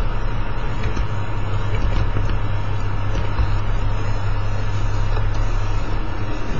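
Steady low rumble with hiss, the recording's background noise, broken by a few faint ticks.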